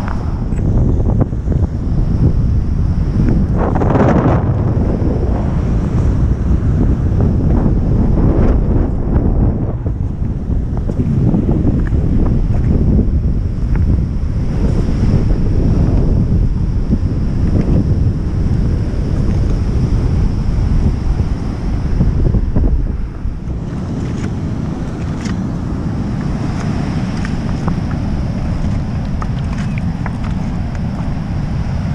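Wind buffeting the microphone over the steady wash of ocean surf breaking on the shore. The wind rumble eases somewhat about three-quarters of the way through.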